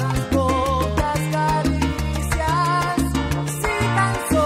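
Salsa music from a recorded dance orchestra, with low notes that step to a new pitch every half second or so and regular sharp percussion hits under a wavering melody line.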